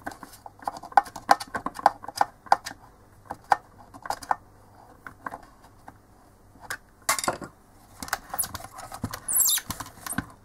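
Small clicks and knocks of a plastic lamp housing being handled and screwed together with a hand screwdriver, several sharp ticks a second at first. A short rustling scrape about seven seconds in and a brief high rasp near the end.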